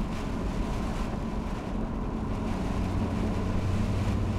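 Lotus Evora's V6 engine droning steadily with road noise, heard inside the cabin while driving; the engine note firms up about two and a half seconds in.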